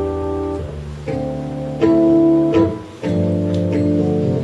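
Live instrumental music with no singing: a slow run of held chords, each chord sustained and changing about once a second.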